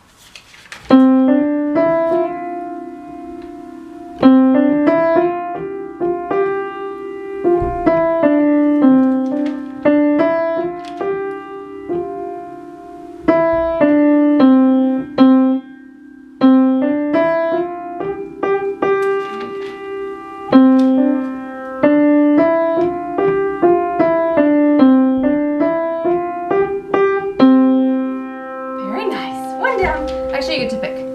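Upright piano played by a child: a simple beginner piece in short phrases, a higher single-note melody over lower notes, with brief pauses between phrases. A note is held near the end.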